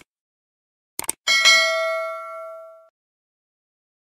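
Subscribe-button animation sound effects: quick mouse-click sounds, then a bright notification-bell ding about a second in that rings and fades away over about a second and a half.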